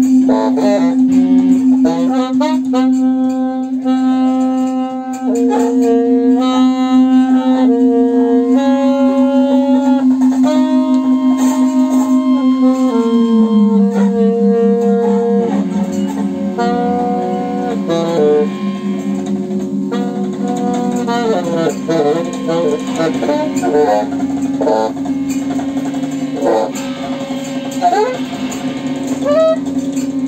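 Live free-improvised music from keyboards, electronics and saxophone. A steady low drone slides down a step about halfway through. Above it runs a repeating pattern of short pitched notes, which later gives way to looser, bending notes.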